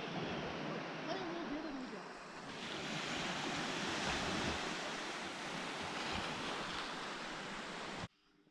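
Small waves washing onto a pebble beach, a steady hiss of surf over shingle, with wind on the microphone.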